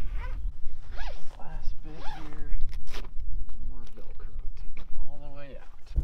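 Heavy-duty zipper on a 23Zero Breezeway rooftop tent's travel cover being pulled along and around a corner in short rasps, mixed with a man's brief vocal sounds.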